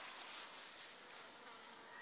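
Faint, steady high-pitched buzz of insects in the open air.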